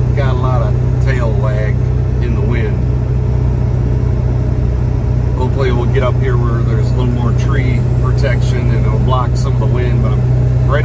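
Steady low drone of engine and road noise inside a vehicle's cab at highway speed while towing a travel trailer. A man talks over it in the first second or so and again through the second half.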